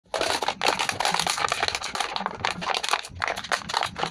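Thin clear plastic jar being squeezed and crushed by hand, its walls buckling with a rapid, irregular crackling.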